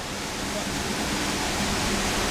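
Steady rushing noise with an irregular low rumble and a faint steady hum underneath, in a pause between speech.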